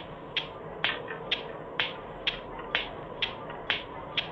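Regular sharp ticks, about two a second, over a faint steady hum.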